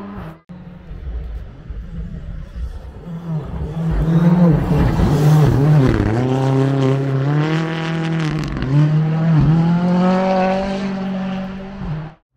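Rally car engine revving hard on a gravel stage. Its pitch climbs and drops several times with gear changes and lifts, loudest as the car passes close.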